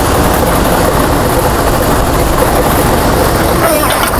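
Lottery draw machines running: a loud, steady blower-like rush of air with the numbered balls rattling around inside the clear chambers as the drawing gets under way.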